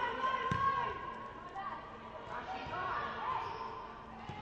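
Futsal players' shouted calls echoing in a gym hall, with a sharp knock of the ball struck on the hard court about half a second in.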